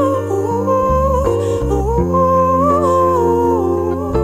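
A female voice sings a wordless, gliding melody, with no lyrics, over sustained low chords that shift a few times.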